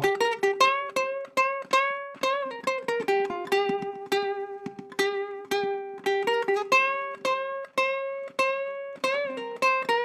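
Ukulele played solo, a single-note blues phrase of picked notes about three or four a second, one note returning again and again, with string bends that push some notes up in pitch.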